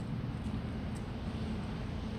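Steady low rumble of outdoor background noise with a faint steady hum running through it.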